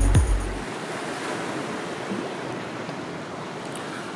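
Steady rush of small ocean waves washing over rocks along the shore, with some wind on the microphone. Background music fades out in the first moment.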